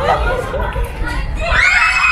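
Excited, shrieking voices, then about one and a half seconds in a long high-pitched scream breaks out and is held: a scream of fright from someone startled by a prankster in a nun costume.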